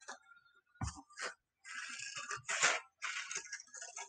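Scissors cutting construction paper in a series of short, crisp snips, with a soft knock a little under a second in.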